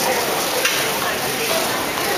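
Steady hiss of a busy terminal hall, with faint voices murmuring in the background.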